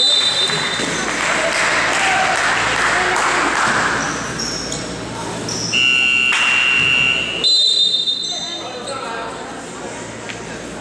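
Basketball game sounds in a reverberant gym: voices shouting over the court, then a steady shrill signal tone lasting about a second and a half around six seconds in, followed by shorter high tones, during a stoppage in play.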